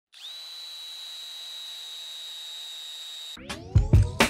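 Power drill spinning up with a quick rising whine, then running at a steady high pitch. It cuts off suddenly near the end and gives way to loud music with heavy hits.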